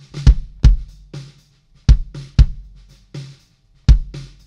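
Recorded drum kit playing back, deep kick drum hits to the fore, mostly in pairs, with lighter snare and cymbal hits between them. The kick runs through an API-style analog channel-strip plugin with its preamp gain turned up.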